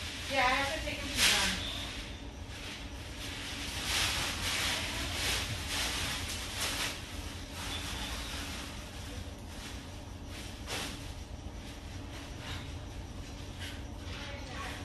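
Paintbrush stroking oil paint onto canvas: a run of short, soft scratchy swishes. A faint voice is heard at the start over a low steady hum.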